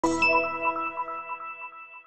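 A bright logo chime struck at the start, with a second quick attack just after, its several ringing tones fading slowly with a slight shimmer.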